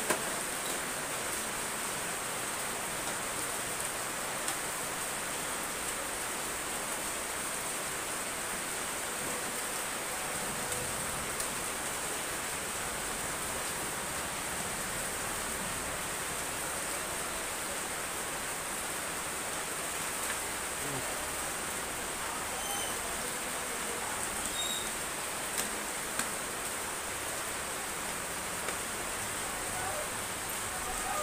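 Steady hiss of background noise with no distinct event in it, only a few faint small ticks.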